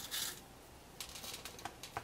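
Fine scenic rock debris sprinkled by hand, the grains pattering faintly onto the glued baseboard edge as scattered light ticks, with a brief hiss at the start.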